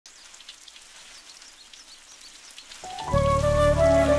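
A faint, steady hiss with light crackle, then background film music with a flute melody swelling in about three seconds in and becoming much louder.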